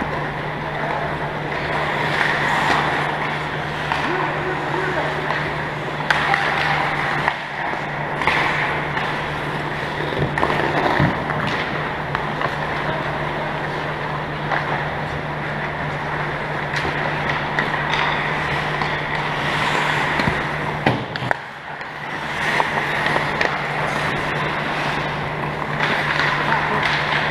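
Ice hockey play in a rink: skates scraping the ice and scattered sharp clacks of sticks and puck, with indistinct voices over a steady low hum.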